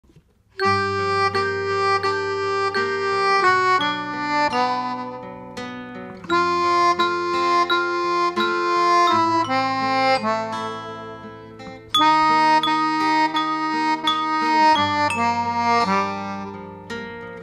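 Melodion (keyboard harmonica) playing held chords, starting about half a second in, the chord changing every few seconds.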